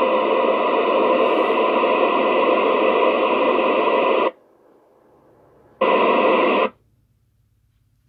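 FM static hiss from a Kenwood TS-2000 transceiver's speaker, heard when the ISS downlink signal drops after the astronaut's "Over". It lasts about four seconds and cuts off sharply. A second short burst of hiss comes about six seconds in, and then the squelch closes and the radio goes silent.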